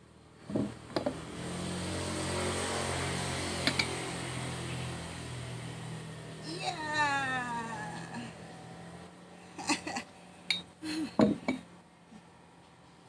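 Metal plate-loaded dumbbells knocking against a wooden bench as they are lifted off it, then several sharper knocks near the end as they are set back down. In between there is a steady low hum and, about halfway through, a drawn-out falling cry.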